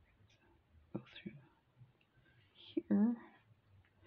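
Soft, half-whispered speech: a few quiet words under the breath, with one short voiced word about three seconds in.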